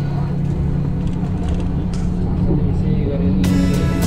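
Background music with a steady low drone over the rumble of a moving vehicle, heard from inside the cabin. Voices come in during the second half, and a brighter sound enters near the end.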